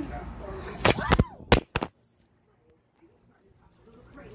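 A mobile phone falling out of its stand and clattering: a few sharp knocks between about one and two seconds in, then near silence.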